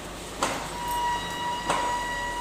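TIG welding on a stainless steel pipe, heard as a steady hiss, with two sharp knocks about a second apart and a steady high tone that starts just under a second in.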